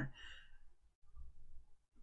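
A person's soft exhale, a faint sigh, fading out within about half a second; after it only a faint low hum remains.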